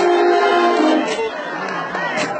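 A brass band playing, with horns holding long steady notes for the first second or so, then a brief softer stretch near the end, with voices mixed in.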